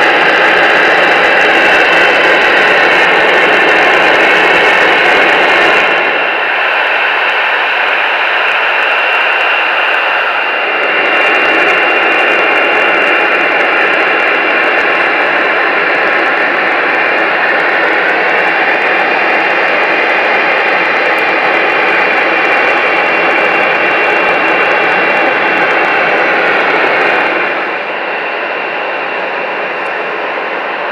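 Boeing 737-800's CFM56-7B jet engines idling while the aircraft stands on the apron: a steady, loud whine with high tones over a dense rush. The level steps down about six seconds in, comes back up about eleven seconds in, and drops again near the end.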